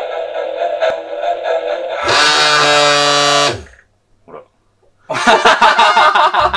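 Electronic buzzer of a toy shock lie detector going off for about a second and a half, a steady buzzing tone whose pitch sags as it cuts off: the device signalling a 'lie'. Background music plays before it, and laughter breaks out near the end.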